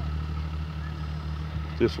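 A vehicle engine idling steadily: an even low hum that holds one pitch throughout.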